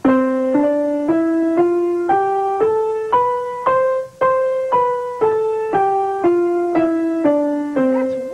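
Piano practice scale: single notes at an even pace of about two a second, climbing one octave from around middle C and stepping back down to where it began.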